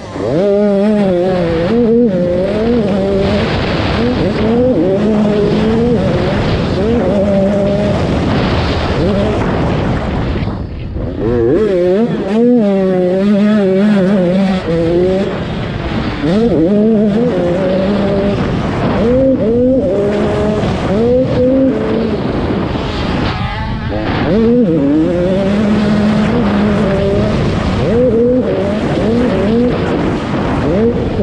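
85cc two-stroke motocross bike's engine revving hard. The pitch climbs and falls back over and over as the rider shifts and rolls off the throttle, with a few brief lulls where the throttle is shut.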